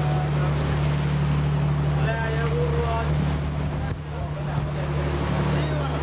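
Boat engine running with a steady low drone, over the wash of wind and water. A voice is heard briefly about two seconds in.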